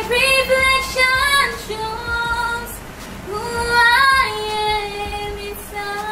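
A woman's solo voice singing a sad song as an example, in two slow phrases of long held notes.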